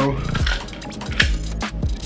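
Glock 43X slide racked to eject the chambered 9mm round: a few sharp metallic clicks, the loudest about a second in, over background music.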